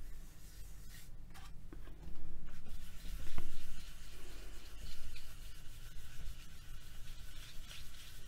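Paper rubbed by hand over a sheet of paper laid on polymer clay, burnishing the clay surface smooth. Dry rubbing comes in several strokes, strongest about three seconds in.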